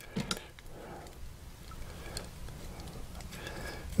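Faint clicks and ticks of a fountain pen's metal and plastic parts being handled and twisted by hand, a couple of sharper clicks near the start, over a low steady room hum.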